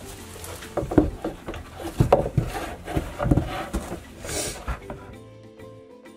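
Irregular knocks and rubbing of close handling against plywood pen walls. Soft background music starts about five seconds in, as the handling noise stops.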